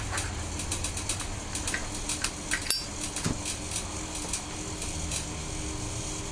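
Small scattered clicks and taps from a tobacco pipe being handled and relit, with one sharper click a little under halfway through. A faint steady hum runs underneath.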